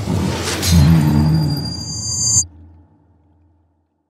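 Film sound effect: a deep, pitched roar, the giant's cry as a meteor strikes his diamond eye, with a high ringing tone over it. It cuts off abruptly about two and a half seconds in, leaving a low rumble that fades to silence.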